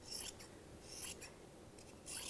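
Scissors cutting through T-shirt fabric: two faint snips, one at the start and another about a second in.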